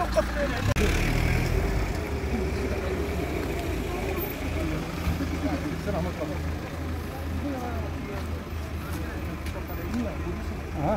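A stopped car's engine idling close by, a steady low rumble, with people talking over it.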